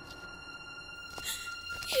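Background score: a soft, steady held high tone with its overtones, like a synth pad, with a faint swish in the second half.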